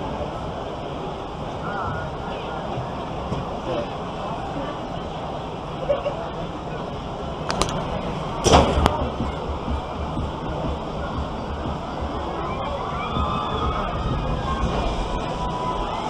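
Outdoor background noise with faint distant voices, broken by a couple of sharp knocks a little past the middle, followed by low rumble of handling or wind on the microphone.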